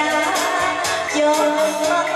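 A woman singing a pop ballad into a microphone over amplified backing music with a steady beat.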